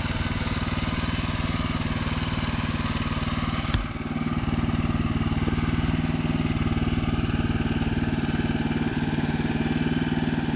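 The 14 hp gas engine of a Woodland Mills HM126 portable sawmill running steadily, with one sharp click a little under four seconds in.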